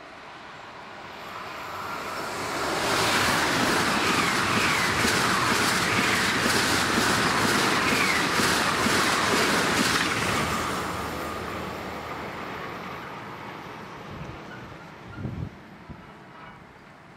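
German ICE high-speed train passing at about 200 km/h: a rushing of air and wheels that swells up, stays loud for about seven seconds with a quick, even clatter of wheelsets over the rails, then fades away. A brief low thump near the end.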